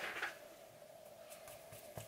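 Quiet room tone with a faint steady hum and one short soft sound at the very start.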